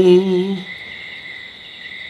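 A long held sung note of Tày phong slư folk singing dies away about half a second in, leaving a pause filled by a steady, high-pitched insect drone.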